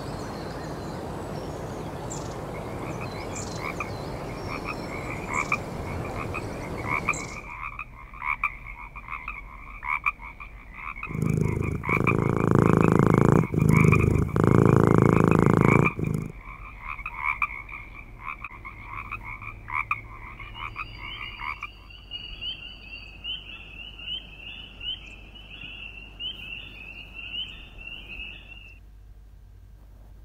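Recorded nature sounds played from a sleep-sounds app. Bird chirps over a rushing ambience come first, then a steady rhythmic frog chorus croaking. A loud, low cat purr covers the middle for about five seconds, and near the end the frog calls move to a higher pitch before the sound stops.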